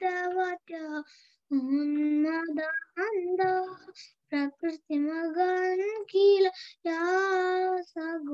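A child's voice singing a Sanskrit verse unaccompanied, in held, gently wavering notes with short breaks for breath between phrases, heard over a conference call.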